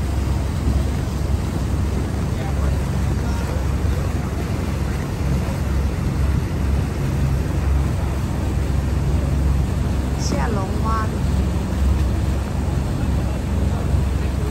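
Small motor launch's engine running steadily with a low drone, with rushing wind and water noise as the boat moves. A brief voice cuts in about ten seconds in.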